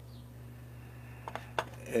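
A low steady hum with two brief small clicks about one and a half seconds in.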